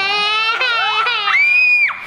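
A toddler crying loudly, his wail bending up and down and then breaking into a high-pitched shriek, held for about half a second, near the end.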